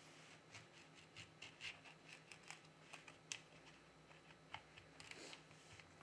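Near silence, with a few faint, scattered scrapes and clicks of a plastic card being worked under a phone's glass back cover to cut its adhesive.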